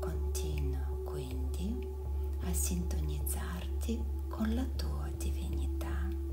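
Soft, whispery speech over a steady ambient music drone with a held tone.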